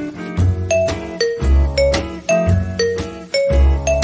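Background music: a light instrumental tune of short struck notes over a pulsing bass line.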